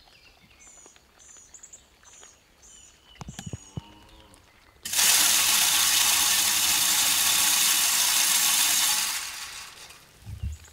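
Timed spin-cast game feeder going off: its motor spins and flings corn, a loud steady spray that starts suddenly about five seconds in and trails off after about four seconds. A few low sounds come about three seconds in.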